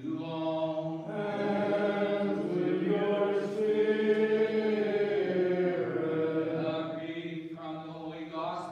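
Unaccompanied Byzantine liturgical chant: voices singing slow, long-held notes, swelling after about a second and easing off near the end.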